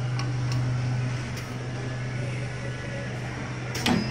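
Cup screen printing machine running with a steady low motor hum, a few light clicks, and one sharp mechanical clack near the end.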